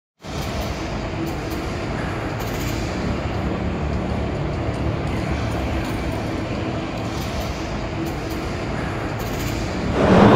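Steady background noise of a busy indoor exhibition hall: an even wash of crowd and ventilation noise with no clear voices.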